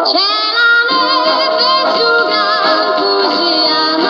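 A 1960s Italian pop single played from a 45 rpm vinyl record: a woman's voice singing with vibrato over an orchestral backing, a new phrase rising in at the start.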